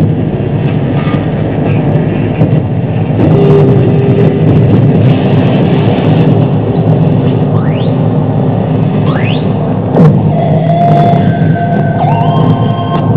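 Live harsh noise music from electronics: a loud, dense wall of rumbling noise. Partway through, two rising tones glide upward, then a sharp falling sweep comes about ten seconds in, followed by steady high tones held over the noise.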